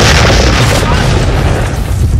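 Loud explosion in an animated film soundtrack: a sudden boom at the start, followed by a sustained low rumble that begins to fade near the end.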